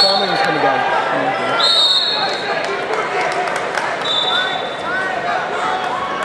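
Wrestling referee's whistle: one sharp blast about one and a half seconds in that starts the wrestling from the referee's position. Shorter, fainter whistle tones come right at the start and again around four seconds, over knocks and voices in a large gym.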